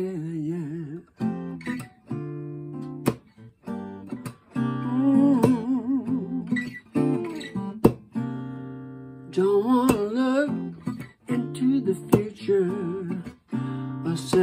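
Acoustic guitar strummed in chords, with a man singing over it in held, wavering notes.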